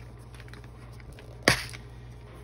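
A single sharp plastic click about one and a half seconds in as the snap latch of a small red plastic embellishment storage box comes open, over a faint low steady hum.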